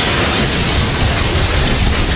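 Loud, steady rushing noise with a deep rumble underneath and no tune or beat, a noise effect in the intro of a cumbia recording.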